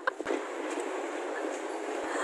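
Steady, even background noise with no voices, with a few faint clicks right at the start.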